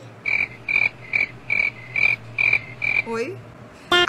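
A series of about eight short, identical high-pitched chirps, evenly spaced at roughly two a second, stopping about three seconds in.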